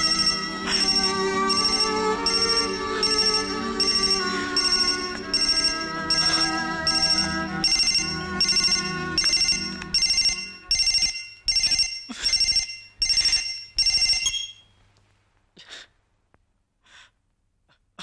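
Flip phone ringing: a high electronic ringtone repeating about twice a second, over background music that fades out about ten seconds in. The ringing stops about four seconds before the end.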